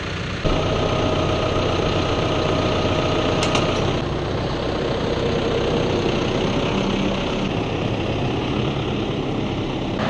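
John Deere 5085M tractor's diesel engine idling steadily, with a few light clicks about three and a half seconds in.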